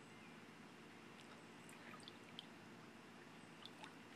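Near silence: faint background hiss with a few faint short ticks.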